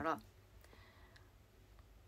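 A woman's voice ends a word, then a quiet pause in a small room with a few faint clicks.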